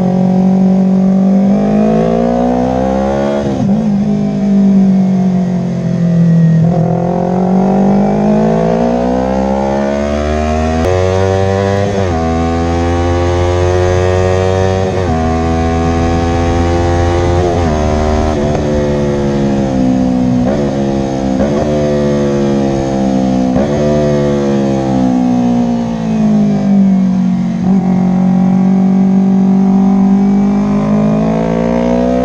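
Yamaha YZF-R3 parallel-twin engine under hard track riding: the pitch climbs and drops many times over as the rider accelerates, changes gear and rolls off for corners, with one long gradual fall in the middle before it climbs again.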